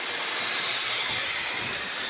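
Steady hiss of a ride's steam-spraying geyser effect, heard from a passing coaster train.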